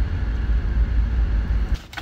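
Low, steady rumble inside a car cabin that drops away near the end, followed by a few knocks as the phone is handled and moved.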